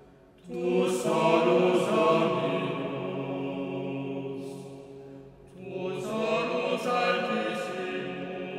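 Small male vocal ensemble singing long held chords. The voices enter together about half a second in, fade away around five seconds, and enter again soon after.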